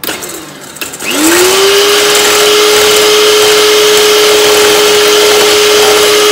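Ikon electric hand mixer switching on about a second in, its motor whine rising quickly to a steady pitch, then running loud and steady as the beaters whisk eggs in a stainless steel bowl.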